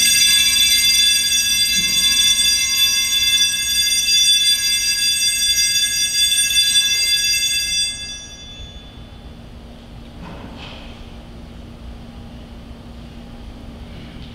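Altar bell struck once as the chalice is elevated at the consecration, its many high tones ringing for about eight seconds and fading out.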